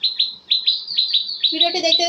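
A small bird chirping a quick run of short, high, falling notes, about five a second. About halfway through, a lower-pitched, pulsing call or voice joins in under the chirps.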